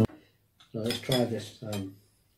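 Forks and spoons clinking and scraping on china dinner plates, starting a little under a second in, with a few short murmured syllables of a voice over them.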